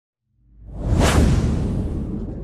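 Logo-intro sound effect: a whoosh swells up out of silence about half a second in and peaks around a second in. A low rumble is left behind and fades slowly.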